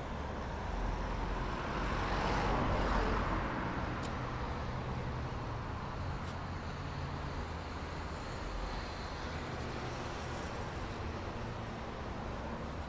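Road traffic on a nearby street: a steady engine hum, with one vehicle passing that swells and fades about two to three seconds in.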